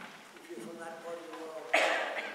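A soft voice, then a single loud cough about three-quarters of the way through.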